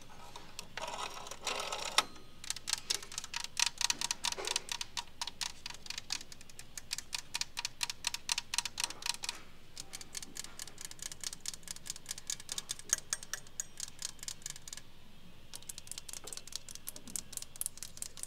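Long fingernails tapping rapidly on vintage rotary telephones, on the dial and the black body and handset, many sharp clicks a second. There is a brief scraping in the first two seconds, and short pauses in the tapping about halfway through and again near the end.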